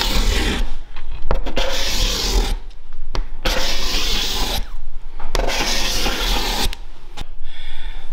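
Cabinet scraper cut from an old bandsaw blade, flexed between the thumbs and pushed along a wooden board in four long scraping strokes, each about a second long. A freshly turned burr is lifting fine shavings.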